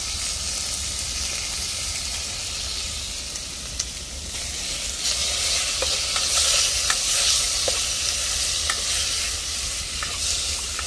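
Chicken skin sizzling in hot oil as it renders in an aluminium wok, with a metal spoon stirring and clinking against the pan a few times. The sizzle gets louder about halfway through as the stirring starts.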